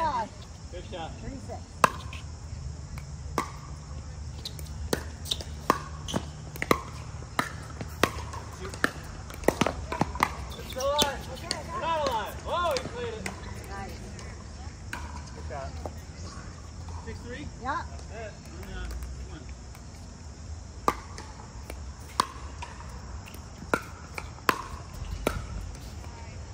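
Pickleball rally: sharp pops of paddles striking a plastic ball and the ball bouncing on the hard court, coming roughly once a second in irregular runs. People's voices are heard briefly about halfway through.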